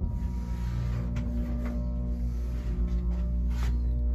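1965 Otis hydraulic elevator's pump motor starting up and running with a steady low hum, pumping oil to raise the car. A few faint clicks sound over the hum.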